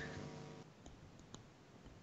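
Near silence in a pause between speakers, broken by a few faint, sharp clicks near the middle.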